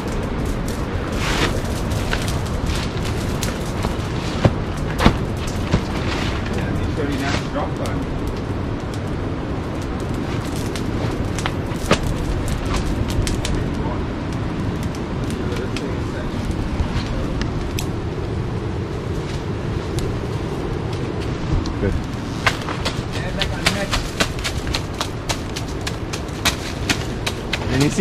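A burning torch on a long pole crackling, with scattered sharp pops and cracks over a steady rushing noise.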